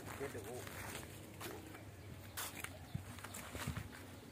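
A faint spoken word near the start, then a few soft scattered clicks and rustles of footsteps on dry leaf litter.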